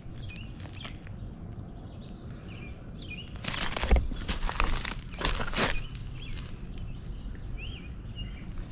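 Small birds chirping faintly and intermittently, with several bursts of rustling and crunching about three and a half to six seconds in as dirt and debris are handled or stepped on.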